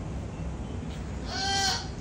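A cat meows once, a single high call of about half a second past the middle.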